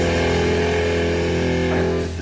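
Black metal song: a distorted electric guitar chord held over a low bass note, ringing steadily with no drum hits.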